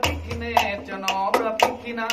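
A male voice sings a drawn-out, melismatic Thai lae melody over a cajón struck by hand, with several sharp slaps through the two seconds.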